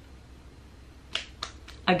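Quiet room tone, then three short sharp clicks in quick succession about a second in.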